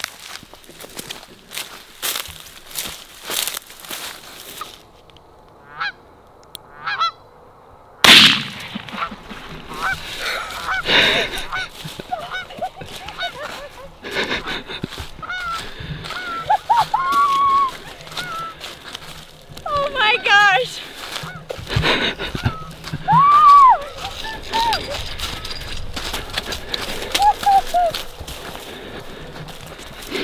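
Canada geese honking repeatedly in short arched calls, with a single loud bang about eight seconds in. Crunching steps through dry corn stubble at the start.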